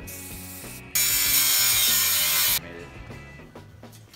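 Angle grinder cutting into a sheet-metal panel: a loud, harsh grinding hiss that starts suddenly about a second in and stops abruptly after about a second and a half.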